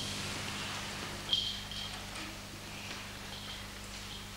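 Quiet room tone on an old video recording: steady low hum and hiss, with a soft click and a couple of faint brief hissing sounds about a second and a half in.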